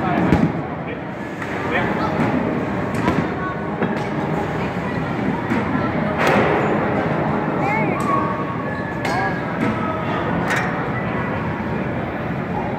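Baseballs from a 60 mph pitching machine knocking sharply against the bat, netting and backstop of an indoor batting cage. There are several knocks spread through, the strongest about six seconds in, over steady background chatter.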